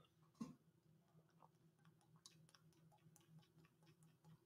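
Near silence: a man drinking from a plastic water bottle, heard only as faint, scattered small clicks, with one slightly louder soft sound about half a second in, over a low steady hum.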